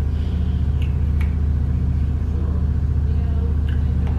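A steady low rumble runs throughout, with a couple of faint short clicks about a second in.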